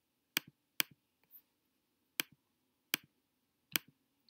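Computer mouse button clicking: five short, sharp clicks at uneven intervals.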